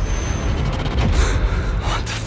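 Cinematic trailer sound design: a heavy low rumble under a dense, breathy whooshing noise, with a thin high tone in the first half second and surges about a second in and near the end.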